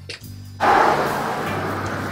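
Background music with steady low notes, joined about half a second in by a sudden, loud, steady rushing noise.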